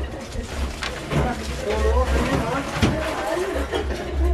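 Indistinct chatter of several people in a hall, over a pulsing low rumble, with a couple of short knocks.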